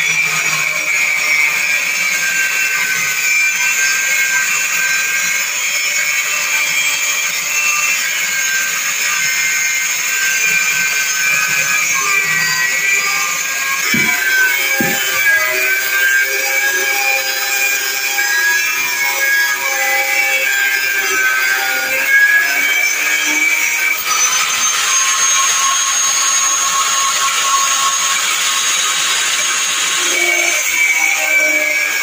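Handheld angle grinder whining steadily as it cuts into the sheet metal inside a van's front wheel arch, trimming it so that a bigger wheel clears. Its pitch sags under load around the middle, with a couple of knocks, and climbs back up about two-thirds of the way through.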